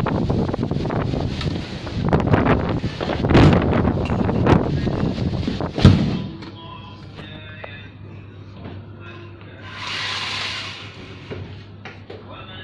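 Strong sandstorm wind buffeting the microphone in gusts, ended about six seconds in by a door shutting with a single sharp thud. Then a much quieter room, with faint music, a low steady hum and a brief hiss about ten seconds in.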